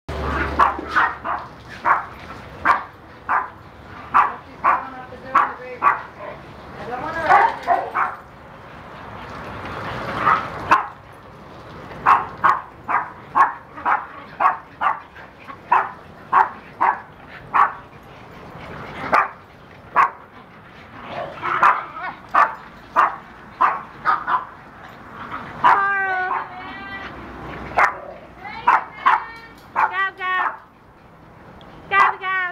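Dogs barking over and over in short sharp runs, often two or three barks a second, with a few longer, wavering calls near the end.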